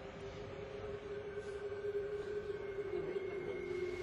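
Soft background score: a sustained synth drone of held tones, swelling slowly, with a higher tone joining about halfway.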